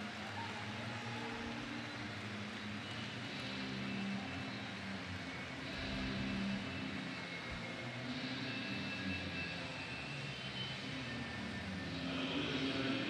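Steady background noise of a large indoor swimming arena: a low, even hubbub of crowd and hall sound with no single distinct event.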